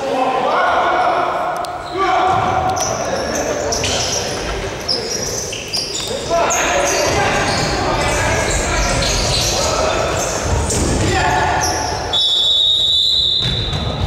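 Futsal match in a reverberant sports hall: players shouting to each other while the ball is kicked and bounces on the hard court floor. About twelve seconds in, a referee's whistle sounds one steady blast of about two seconds.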